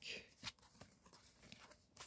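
Near silence with a few faint clicks, the strongest near the start and about half a second in, from Uno playing cards being handled and shifted in the hands.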